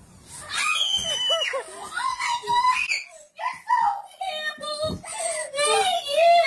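A young child screaming and crying in high, wavering cries, with one short break about halfway. The child is crying for joy at a new puppy.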